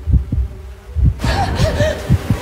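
Deep heartbeat thumps in lub-dub pairs, about a second apart, used as trailer sound design. About a second in, a hissing wash joins them, with a few short, faint chirps.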